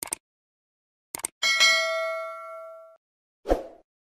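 Subscribe-button animation sound effects: quick mouse clicks, then a bright bell-like chime that rings out and fades over about a second and a half, and a short thump near the end.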